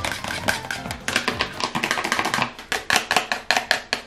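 Plastic applicator clicking and scraping against a plastic tray while hair dye cream is stirred, a quick, irregular run of clicks and taps.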